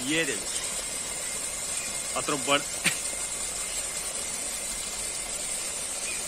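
A few brief spoken words over a steady high-pitched hiss, with a single sharp click about three seconds in.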